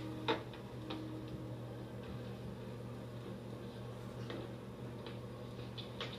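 Steady low hum of an old film soundtrack played through a TV speaker, with one sharp click about a third of a second in and a few fainter ticks later.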